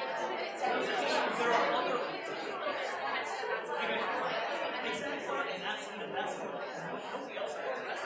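Many people talking at once in a large hall: indistinct, overlapping conversation with no single voice standing out.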